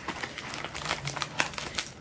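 Wrapping crinkling as hands pull at a tightly wrapped package, a run of quick, irregular crackles.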